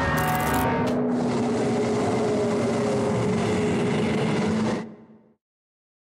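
Cinematic soundtrack drone: a dense, steady rumble with low held tones, after a few sharp musical hits in the first second. It fades out about five seconds in.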